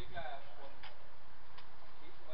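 A voice briefly right at the start, then two sharp clicks about three-quarters of a second apart over a steady background hum.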